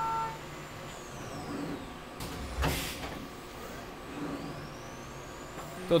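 SYIL X7 vertical CNC mill ending its finishing pass, the steady cutting tone stopping just after the start. The spindle whine then falls away, a short burst of air hiss comes about two and a half seconds in, and a high whine rises again, the pattern of a tool change as the mill goes to pick up its chamfer mill.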